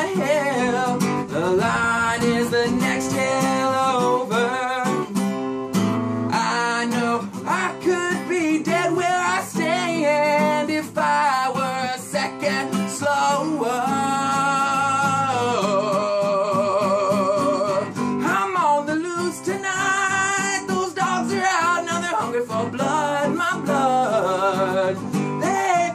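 Guitar instrumental break in a bluesy outlaw-country rock song: strummed chords under a bending, wavering melody line.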